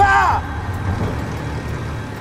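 A man's loud shout of "Rafa!" at the very start, over within half a second, followed by a steady low rumble.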